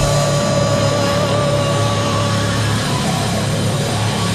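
Heavy southern rock band playing loud and dense, with distorted electric guitars and drums coming in at full volume right at the start. A long held note carries on over the band and fades out about halfway through.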